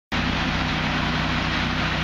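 A Dodge Viper SRT10's 8.3-litre V10 idling steadily, a low, even engine note under a wide hiss.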